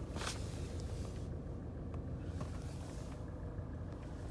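Range Rover Evoque's engine idling, a steady low hum heard inside the cabin. A brief rustle near the start.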